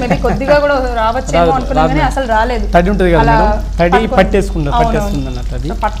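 Talking over chicken pieces deep-frying in a kadai of hot oil, with a steady sizzle beneath the voice.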